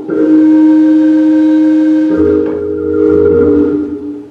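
Organ playing long held chords. About two seconds in the chord changes and a low bass note comes in.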